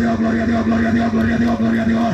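An amplified voice holds one long, level low note through a PA speaker, over a quick, evenly repeating musical pattern.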